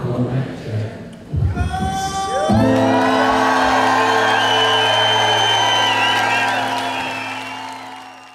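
Live band music at the close of a song: after a noisier stretch, a sustained chord enters about two and a half seconds in and is held with audience cheering and high whistles over it, then fades out toward the end.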